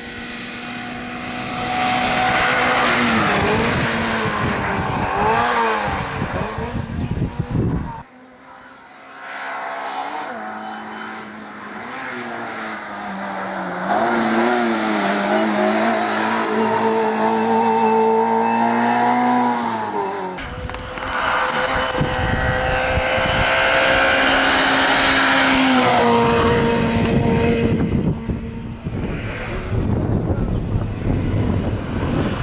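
Autobianchi A112 Abarth's four-cylinder engine revving hard as the car drives past at racing speed, its pitch climbing and then dropping sharply at each gear change. The sound cuts off abruptly twice, about eight and twenty seconds in, between separate passes.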